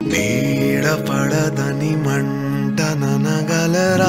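Telugu film song: the music comes in suddenly at full level after a quiet fade, with a wavering melody line over steady held low notes.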